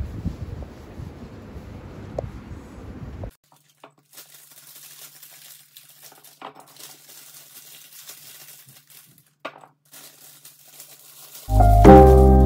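Wind buffeting the microphone for about three seconds, then a sudden cut to faint kitchen handling sounds: plastic packaging crinkling and a few light clinks over a thin steady hum. Lofi piano music comes in loudly near the end.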